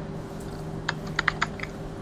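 A few quick keystrokes on a computer keyboard, about half a dozen clicks bunched together around the middle, over the steady hum of the video-call line.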